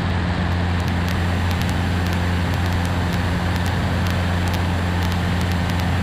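Cessna 150's engine and propeller droning steadily, heard inside the small cockpit: a constant low hum with a rushing noise over it.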